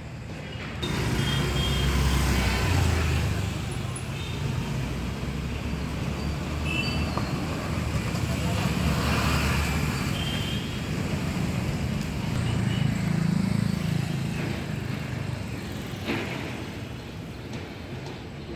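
Road traffic passing close by: vehicles go by one after another, the rumble swelling and fading, loudest about two seconds in and again around nine and thirteen seconds.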